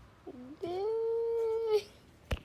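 A cat yowling: a short dipping call, then one long, level drawn-out yowl that cuts off suddenly near the end.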